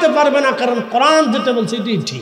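Only speech: a man preaching loudly into microphones.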